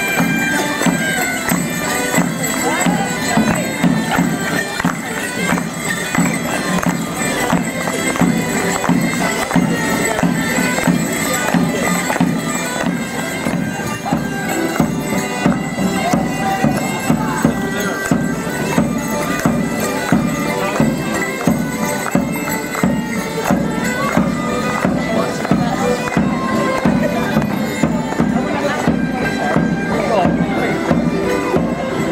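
Folk band playing a Morris dance tune: a reed instrument over a steady drone, with a regular drum beat throughout.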